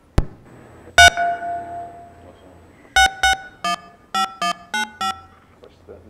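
A desk telephone being dialed over its speaker. A sharp click near the start and a single ringing tone about a second in are followed by a quick run of about eight short keypad beeps as the number is keyed in.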